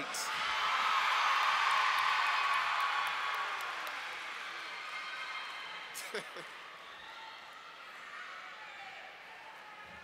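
Audience cheering and shouting for a graduate whose name has just been called, loudest a second or two in and then slowly dying away, with one short whoop about six seconds in.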